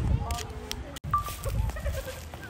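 Brief wordless vocal sounds from children, with outdoor background noise. The sound drops out abruptly for an instant about halfway through.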